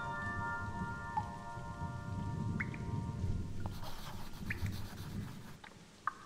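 Soft solo piano notes ringing out and fading over a steady recording of falling rain with a low rumble beneath it. The piano stops a little past halfway, leaving only the rain, which grows quieter near the end.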